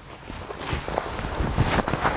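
Irregular rustling of a nylon waist pack, its webbing strap and clothing as the strap is pulled over the head and swapped to the other shoulder, with many small knocks and brushes.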